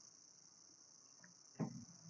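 Near silence in a pause of a lecture recording: a steady faint high-pitched hiss, with one brief soft sound near the end.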